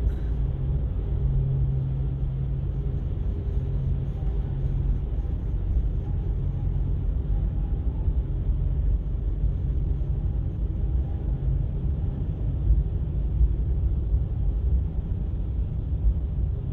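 Steady low engine rumble inside a car ferry's enclosed steel vehicle deck, with a low hum that is strongest in the first few seconds.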